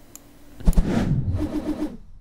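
Short transition sound effect for an animated section title: a sudden hit about two-thirds of a second in, followed by a noisy swell with a few quick low pulses, fading out near the end.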